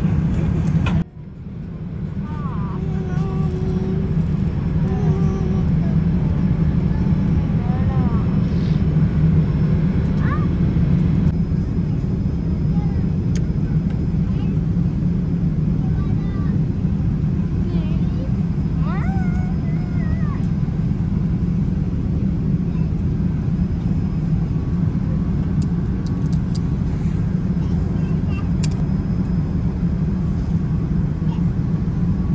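Steady low cabin noise of a jet airliner in flight, with faint voices in the background. The sound drops out briefly about a second in, then fades back up.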